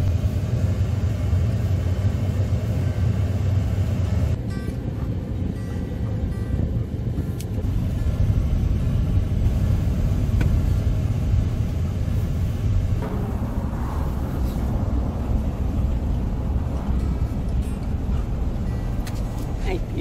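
Pickup truck driving along a road with the windows down: steady low rumble of wind rushing past the open window and road noise, its tone shifting about four seconds in.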